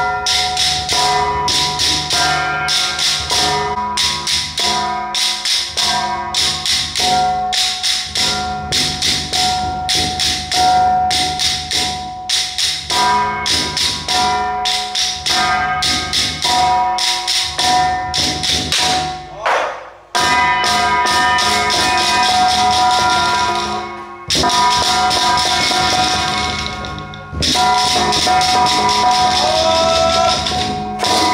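Ritual percussion for a Penghu xiaofa temple rite: quick, evenly spaced strikes with a steady metallic ringing tone. It breaks off briefly twice, about two-thirds of the way through.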